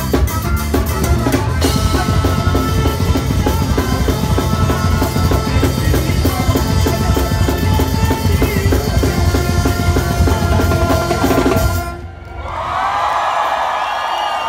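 Live ska band playing at full volume, with drum kit, bass and trombone, up to a sudden final stop about twelve seconds in. The crowd then cheers and whistles.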